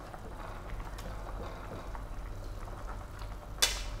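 Pig trotters at a rolling boil with ginger in a pan, the water bubbling steadily with a light crackle; the trotters are boiled tender at the end of the first boil.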